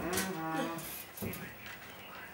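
A person's drawn-out low voiced sound, like a moo-like groan or hum, held at a steady pitch for under a second near the start. A couple of soft knocks follow.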